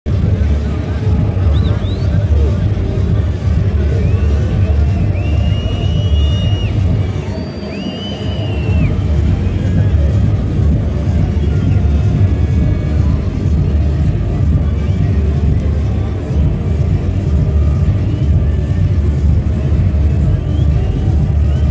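Loud, steady stadium ambience: the crowd's chatter mixed with music over the public address, heavy in the low end. A few short, high gliding tones stand out between about four and nine seconds in.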